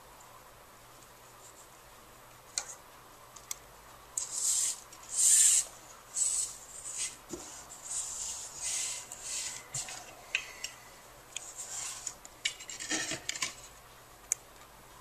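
Nylon paracord rubbing and sliding through the slots of a plastic side-release buckle as it is threaded and pulled tight by hand. The sound is a series of short, irregular swishing rubs, the loudest about five seconds in, with a few light plastic clicks.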